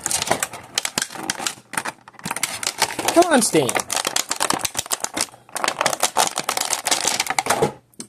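Stiff clear plastic blister packaging crackling and clicking rapidly as a figure is worked out of it by hand, in spells broken by brief pauses. A short vocal sound about three seconds in.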